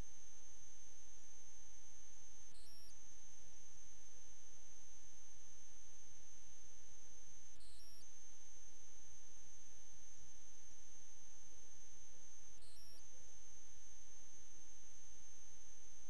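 Steady electrical hum with several constant tones and a thin high-pitched whine; the whine dips briefly three times, about five seconds apart.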